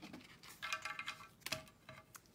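Faint handling of cardstock on paper at a craft table, with a couple of light taps about one and a half seconds in. There is also a short, faint steady tone lasting about half a second, a little before the taps.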